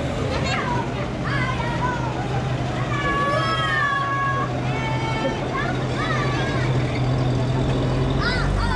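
Engine of a WWII US Army six-wheel cargo truck running steadily at low speed as it rolls past, a low even hum, with high-pitched children's and crowd voices over it.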